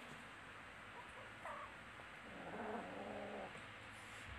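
A kitten calling: a short high mew that falls in pitch about one and a half seconds in, then a lower call about a second long near the end.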